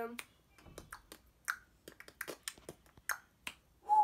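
Fingers snapping, about a dozen sharp snaps at an uneven pace.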